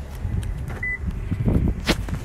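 Wind and handling noise on a handheld phone microphone while walking outdoors: a low rumble with scattered rubs and knocks, the loudest knock near the end. A short high beep sounds just under a second in.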